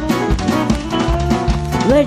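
Live band playing a country-rock song: drum kit keeping a steady beat of about two hits a second, with electric bass, acoustic guitar and electric guitar.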